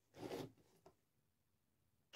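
Near silence, with one short, soft rustle-like noise shortly after the start and a faint tick a little before the halfway point.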